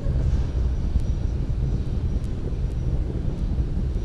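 Steady low rumble of a Falcon 9 first stage's nine Merlin engines in ascent, passing through Max-Q, as picked up by the rocket's onboard camera, with a few faint ticks.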